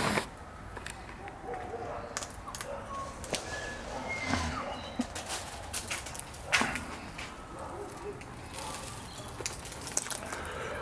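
Sulphur-crested cockatoo pecking seed off a wooden railing: scattered sharp clicks and taps of its beak on the seed and wood, one louder knock about six and a half seconds in. Faint short bird chirps now and then.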